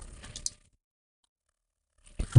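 Near silence: faint room tone with a couple of soft clicks in the first half second, then cut to dead silence.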